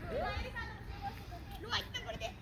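Background voices of people and children talking and playing, with a steady low hum underneath.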